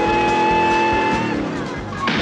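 TV-show music score with a long held note that fades a little past the middle, over the engine noise of the General Lee, a 1969 Dodge Charger, as it flies through the air on a jump.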